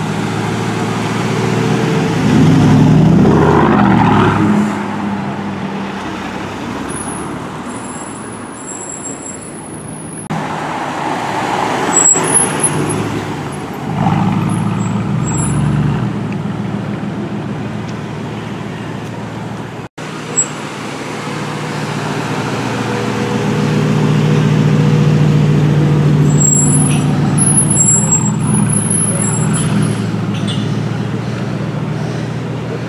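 Aston Martin DBX prototype's engine driving off in slow city traffic. It builds to a loud rev about three seconds in, gives sharp blips about twelve and fourteen seconds in, then swells again to a steady loud drone near the end.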